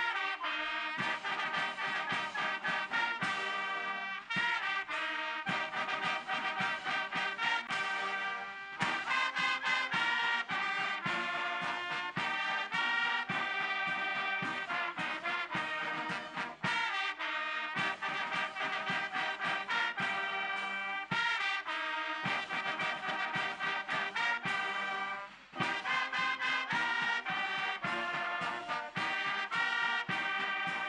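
Military brass band playing, with trumpets and trombones in harmony, a brief break near the end.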